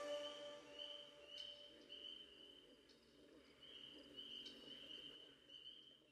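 Faint crickets chirping, a steady run of short chirps about twice a second, as the last of the music dies away at the start.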